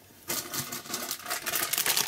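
Soft plastic wet-wipe pack crinkling as it is picked up and handled: a rapid run of crackles starting about a third of a second in.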